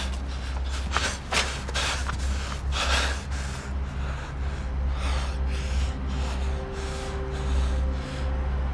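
A man breathing heavily, a series of sharp, airy breaths and sighs at uneven intervals, over a steady low hum.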